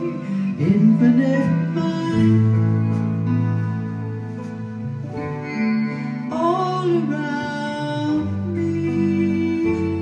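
A song performed live: guitar and held chords with singing over them.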